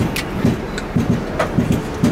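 Steady rumbling vehicle noise with about half a dozen irregular low knocks.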